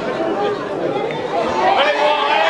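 Several voices shouting and calling over one another at a rugby match, from players and spectators around a ruck.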